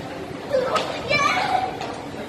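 A child's voice, a short call with a rising pitch starting about half a second in, over steady background noise of a large indoor hall.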